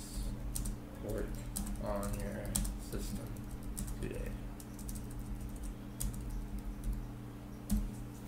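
Computer keyboard typing: a run of quick, irregular keystrokes as a sentence is typed out, over a steady low hum.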